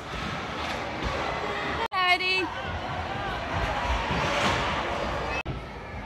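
Children's voices and chatter echoing in a large indoor play hall, with one child's high-pitched shout about two seconds in. The sound cuts out abruptly for an instant twice.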